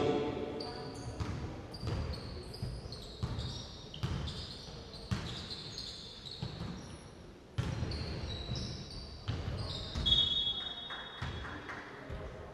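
A basketball being bounced on an indoor court floor, sharp bounces coming irregularly about once a second, with short high squeaks between them, typical of shoes on the hardwood.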